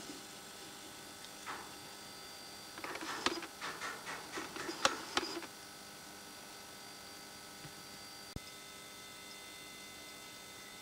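Vintage Philips battery charger running under load with a faint steady hum. A burst of clicks and rattles comes about three to five seconds in, and a single sharp click near the end.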